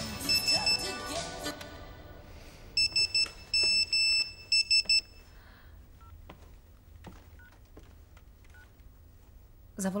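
Nokia mobile phone's text-message alert: high electronic beeps in the Morse pattern for 'SMS', three short, two long, three short, about three seconds in. A few faint key beeps follow as the message is opened.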